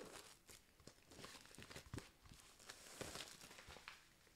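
Faint rustling and crinkling of a pack of cardstock being handled, with a few soft clicks scattered through it.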